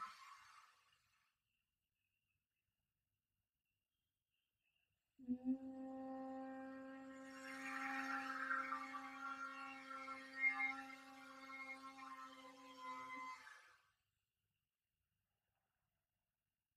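A woman humming one steady note with closed lips for about eight seconds, starting about five seconds in after a silent in-breath, then fading out: the humming exhale of a humming-breath pranayama.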